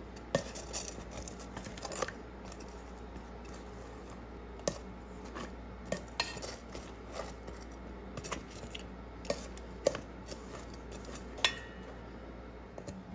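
Metal tongs clinking against a stainless steel mixing bowl while turning sauced fried chicken cutlets. Irregular sharp clinks come a second or two apart, with soft scraping between them; the loudest clink comes near the end.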